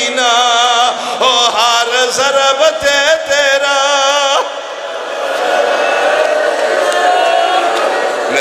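A man's chanted, sung lament delivered through a microphone, loud, his voice wavering in pitch. About four seconds in it breaks off abruptly, and a fainter, blurred sound of voices follows.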